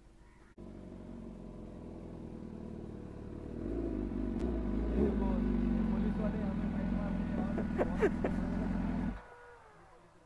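A BMW 1000 cc superbike engine running at a steady idle. It comes in suddenly about half a second in, grows louder a few seconds later, and cuts off abruptly about a second before the end, as if switched off.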